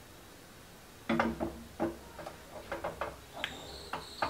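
Mustard seeds popping and crackling in hot oil in a small tempering pan, irregular sharp pops starting about a second in. A thin, steady high tone comes in near the end.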